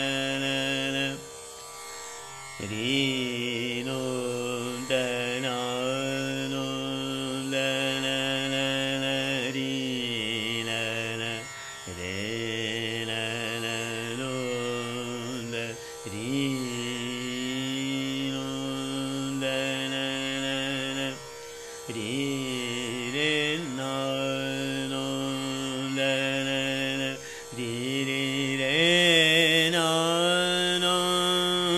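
Male dhrupad singer performing the unaccompanied alap of Rag Bageshri over a tanpura drone, holding long notes with slow slides between pitches. The singing is broken by a few short pauses for breath.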